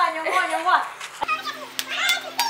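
Excited voices calling out and laughing during a skipping-rope game, then a sharp thump about a second in followed by a few lighter taps near the end.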